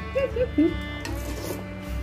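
Brief soft talk over steady background music, with a low hum underneath.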